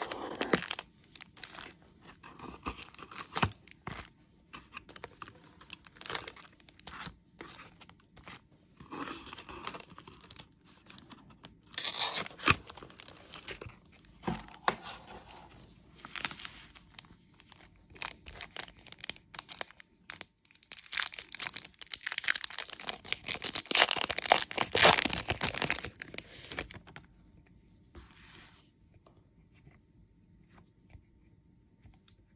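Foil wrappers of Topps Chrome trading-card packs being crinkled and torn open by hand: scattered crackles, a loud burst about twelve seconds in, and a longer, louder stretch of tearing and crinkling in the second half, then quieter card handling near the end.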